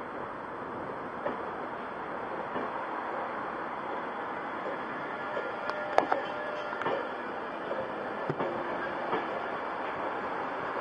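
InterCity 225 train of Mk4 coaches, led by a driving van trailer, pulling slowly away past the platform with a steady rolling rumble. From about halfway through come sharp clicks and knocks as the wheels pass over rail joints.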